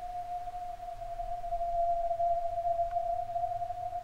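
A steady electronic tone held at one unchanging pitch, with a faint low hum beneath it.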